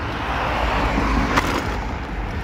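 Street traffic noise: a steady rush of passing vehicles with a low rumble underneath, and a single short click about a second and a half in.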